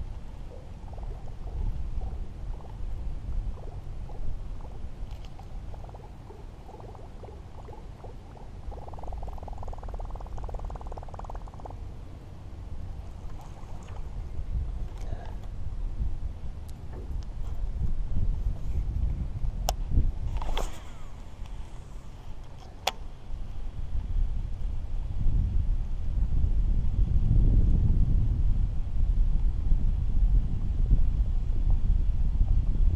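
Wind rumbling on the microphone, growing louder near the end, with a few sharp clicks in the second half.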